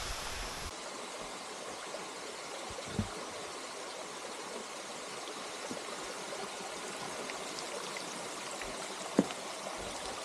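Waterfall running, a steady rush of water, with a faint knock about three seconds in and a sharper one about nine seconds in.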